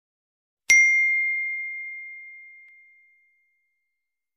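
A single bell-like ding, the notification-bell chime sound effect of a subscribe-button animation. One clear tone strikes under a second in and fades away over about two and a half seconds.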